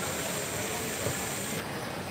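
Steady background hubbub of a large exhibition hall, with faint distant voices and a thin high tone that stops a little after halfway.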